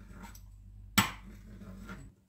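A pastry cutting wheel rolling through thin sheet dough on a marble countertop, with one sharp knock about a second in, over a steady low hum.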